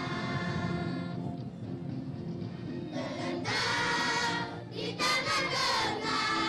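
A group of children singing together in chorus into a microphone. The singing is softer early on, with a lull after about a second, then comes in louder from about halfway through.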